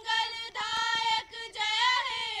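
High voices, children or women, singing together in long held notes, with short breaks between phrases.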